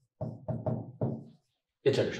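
Whiteboard marker knocking against the board as a line is written: four quick taps in the first second.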